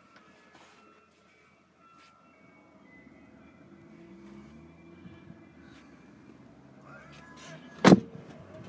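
A car's rear door shut with one loud, sharp thud near the end, after a few quiet seconds and a faint low hum.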